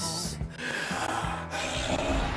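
A man's short, breathy laugh, with background music playing under it.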